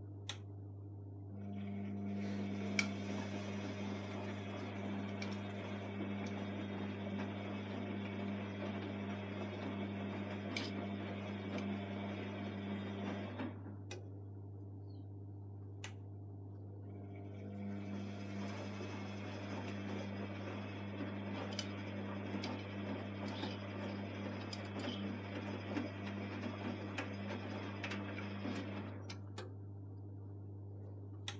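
Electrolux Time Manager front-loading washing machine running its wash cycle with no drum movement, its faulty state. Two runs of about twelve seconds of steady mechanical whirring, with a gap of about four seconds and sharp clicks between them, over a steady low hum.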